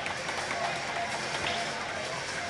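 Ice hockey arena ambience during a warm-up: steady crowd chatter from the stands, with skates scraping the ice and a couple of sharp knocks from sticks or pucks.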